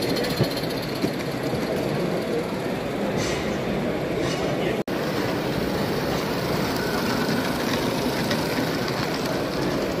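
A small live-steam garden-railway locomotive running along its track, heard over the steady chatter of a busy exhibition-hall crowd. The sound cuts out for an instant about five seconds in.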